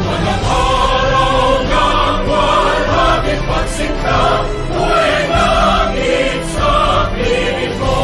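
A choir singing in unison with instrumental accompaniment, each sung note held for about half a second to a second.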